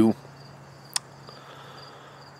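Crickets chirping faintly in a high, steady trill, with a single sharp click about a second in.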